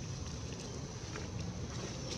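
Steady low rumble of wind buffeting the microphone outdoors, with a few faint soft clicks.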